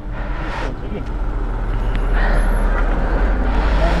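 A motor vehicle's engine running close by, a low steady rumble under street noise that swells in the second half.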